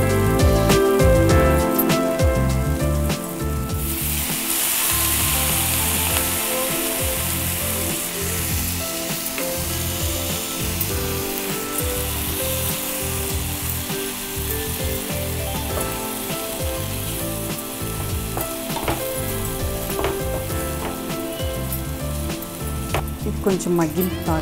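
Soya chunks, gongura leaves and spices sizzling in a frying pan on a gas stove, stirred with a spatula. The sizzle swells sharply about four seconds in, then settles into a steady hiss.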